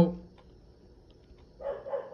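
A man's voice: the end of a drawn-out "Now", then a pause of quiet room tone, then his next words starting near the end.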